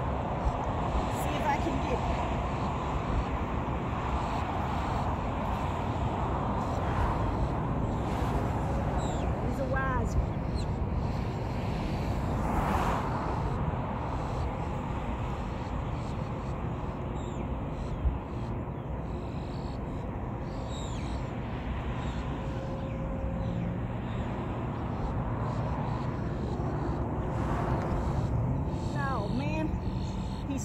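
Steady low rumble of background road traffic, with a few short bird calls scattered through it and a single sharp click partway through.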